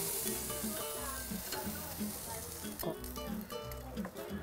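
Zucchini and sausages sizzling on the grate of a portable grill, the hiss thinning out after about three seconds. A couple of sharp clicks come about three seconds in, over light background music.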